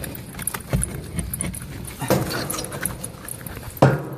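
Close-up rustling and clicking from handling, with scattered knocks and one loud knock just before the end as the camera is jostled.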